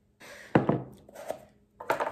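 Mashing avocado in a bowl, the utensil knocking against the bowl: a sharp knock about half a second in, a lighter one past a second, and a quick run of knocks near the end.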